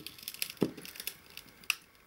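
Small clicks and light crackling as fingers handle a circuit board on its aluminium frame, working it loose. There is a sharper click about half a second in and another near the end.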